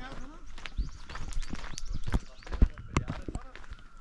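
Footsteps crunching on a gravel track at a walking pace, irregular steps with low thumps, with voices talking in the background.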